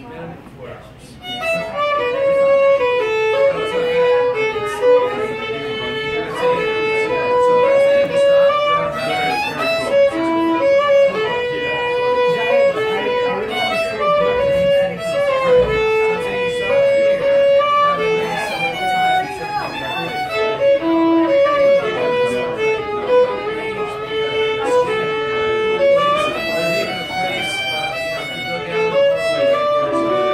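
Solo fiddle playing a fast tune of short bowed notes, starting about a second in.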